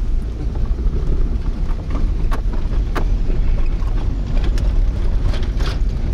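Car driving on an unpaved road, heard from inside the cabin: a steady low rumble of engine and tyres with scattered short knocks and rattles from the bumps.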